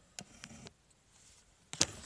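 Handling noise from a phone being moved about in the hand: a single small click near the start, then a burst of sharp knocks and rubbing on the microphone near the end.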